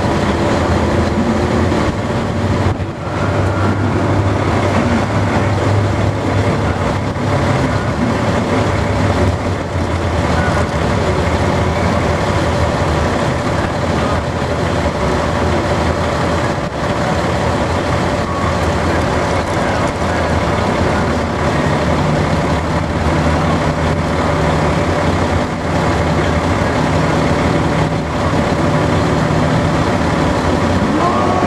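Drag-racing car engines, a Plymouth Duster's among them, idling loudly and steadily while the cars sit staged at the starting line; a second steady engine note joins about two-thirds of the way through.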